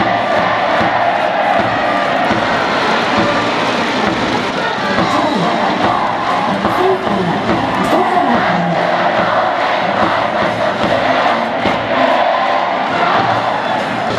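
Baseball stadium crowd cheering and chanting without a break, with music underneath.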